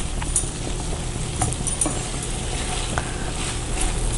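Wooden spatula stirring and scraping grated cauliflower masala in a nonstick frying pan, with the mix sizzling steadily. A few light scrapes and taps of the spatula on the pan are scattered through it.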